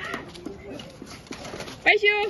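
Mostly speech: a voice calls 'bye' near the end, over faint background voices and small ticks.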